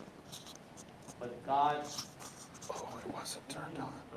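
Faint, indistinct talk in a room, a short phrase about a second in and softer murmuring later, with a few light clicks and rustles.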